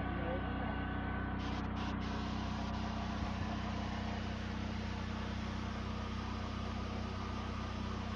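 A vehicle engine idling: a steady low hum.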